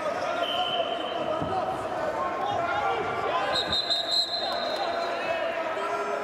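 Indistinct voices echoing in a large wrestling arena, with a few dull thumps and two brief high tones, one about half a second in and one near four seconds.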